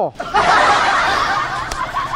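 A burst of laughter that starts just after a short "oh" and slowly trails off.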